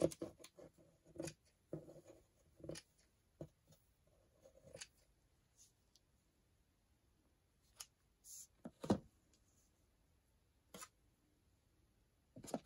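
Scissors snipping through cheesecloth: a run of short, sharp snips over the first five seconds, then a few scattered clicks, the loudest about nine seconds in.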